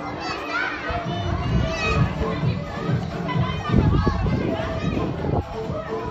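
A crowd of young children playing and shouting, many high voices calling over one another, with the loudest squeals in the first couple of seconds.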